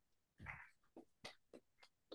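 Near silence: one faint short sound about half a second in, then a few faint, brief clicks.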